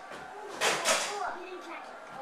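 Indistinct voices in a room, with a short, louder rush of noise a little over half a second in.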